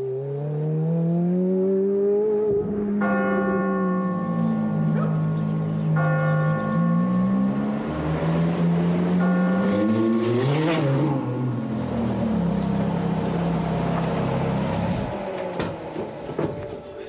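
Ferrari F430's V8 engine revving and pulling hard, its pitch climbing and shifting with the gears, and peaking as the car sweeps past about eleven seconds in. Church bells ring over the engine from about three seconds in.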